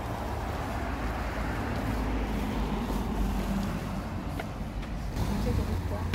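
City street traffic: a steady low rumble of road vehicles, with one vehicle's engine hum rising and fading in the middle.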